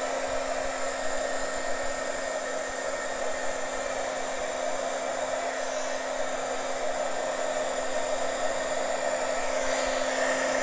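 Handheld embossing heat gun running steadily, blowing hot air across wet acrylic pour paint: an even rush of air over a constant motor hum.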